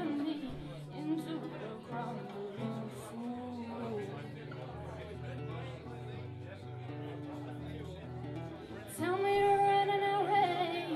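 Acoustic guitar played in chords, with a woman singing. The voice comes in strongly about nine seconds in on a long held note.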